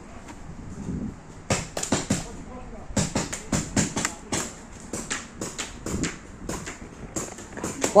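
Sharp, irregular pops of gunfire in a skirmish game, starting about one and a half seconds in and coming in quick runs of several shots.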